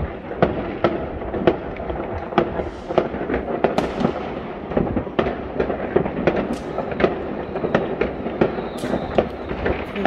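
New Year's Eve fireworks going off across a city: a dense stream of sharp bangs and pops, several a second, over a continuous background of more distant bangs.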